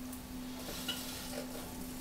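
Electric potter's wheel spinning, with a steady hum under a faint hiss and a couple of soft touches of wet hands near the clay.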